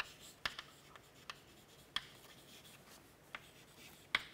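Chalk writing on a chalkboard: faint scratching with a few sharp taps of the chalk against the board.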